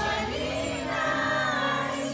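Live pop-rock music: a woman singing a sustained melodic line into a microphone over the band's backing, with steady bass notes underneath.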